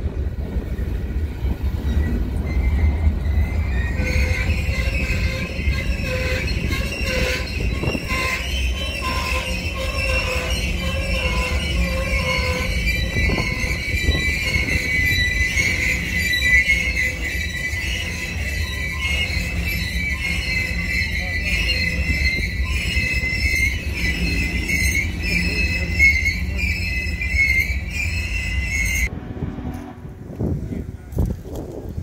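Covered hopper cars rolling slowly past close by, over a low rumble of rail traffic, with steel wheels squealing in a steady high pitch from about four seconds in. The squeal cuts off suddenly just before the end as the last cars go by.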